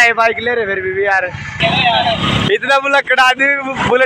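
Men's voices talking by a road, with a short burst of motor vehicle noise about halfway through.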